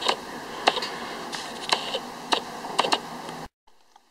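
Wood burning in a rocket stove, crackling with irregular sharp pops over a steady hiss, under a coffee percolator that has just begun to perk. The sound cuts off suddenly about three and a half seconds in.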